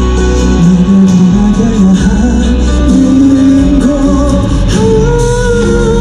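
Live pop music played loud through a concert PA: a sung melody over guitar and band accompaniment.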